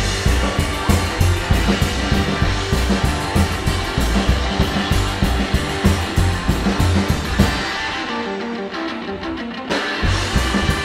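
Live rockabilly band playing an instrumental guitar break on a hollow-body electric guitar over drum kit and upright bass. Near the end the drums and bass drop out for about two seconds, leaving the guitar alone, and the full band comes back in.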